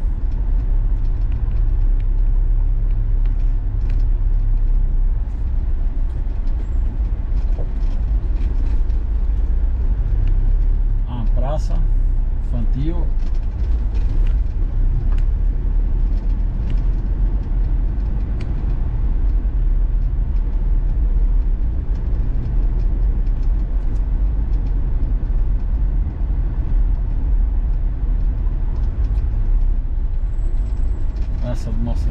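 Steady low rumble of a Troller 4x4 being driven slowly on town streets, heard from inside the cabin. A brief voice is heard about eleven seconds in.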